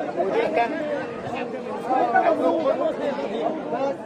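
Several voices talking over one another at once, a jumble of overlapping chatter.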